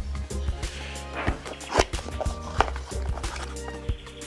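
Background music with steady low tones, over several sharp knocks and rustles from a small cardboard box being opened and a bundle of charging cables being handled; the loudest knocks come near the middle.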